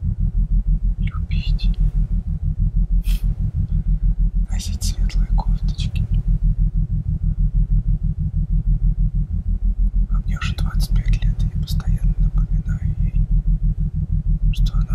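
A loud, low drone pulsing in a rapid, even rhythm throughout, with whispered speech breaking in a few times, briefly about 1, 3 and 5 seconds in and for a longer stretch between about 10 and 12 seconds.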